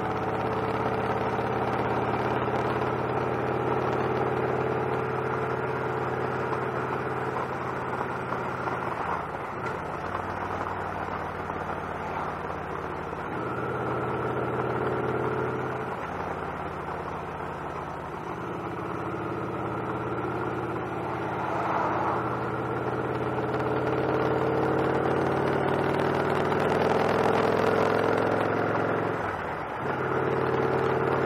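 Victory Cross Roads motorcycle's V-twin engine running under way at road speed, with a steady rush of wind and road noise. The engine note shifts up and down several times as the throttle changes through the curves, and dips briefly near the end.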